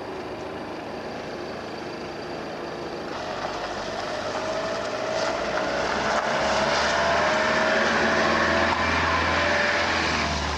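Van driving slowly up the gravel drive toward and past the listener: engine and tyres growing louder from about three seconds in, loudest over the last few seconds.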